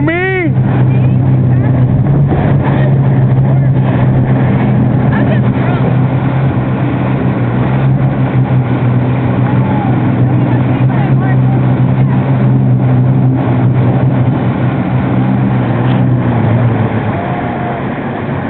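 Personal watercraft (jet ski) engine running at a steady speed under way, with water rushing and wind noise; the engine tone eases off near the end.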